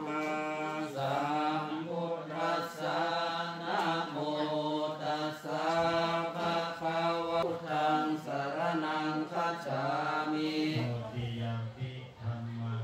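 Buddhist monks chanting together in one continuous recitation, with no breaks.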